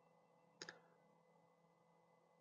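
Near silence, broken by one faint double click about half a second in.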